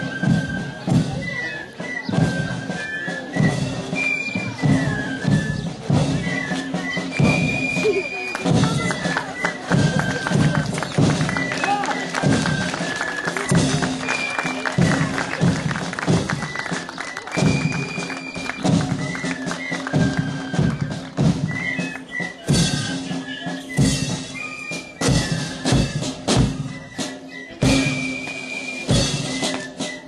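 School marching band playing a march: snare and bass drums beating a steady rhythm, with a high melody of short held notes above them. The drum strikes grow sharper and more distinct in the last third.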